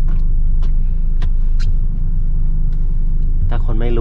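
Ford Grand Tourneo Connect van's engine idling, a steady low rumble heard inside the cabin, with a few faint clicks.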